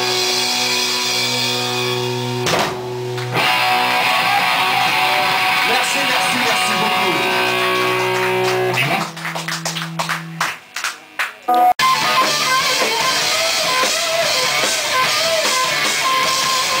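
Live rock band with electric guitar and bass holding ringing chords. About nine seconds in the band breaks into a string of short stop-and-start stabs with brief gaps, then the full band comes back in loudly.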